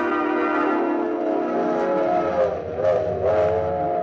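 Orchestral brass holding a long chord of several notes, which shifts and wavers in pitch in its second half.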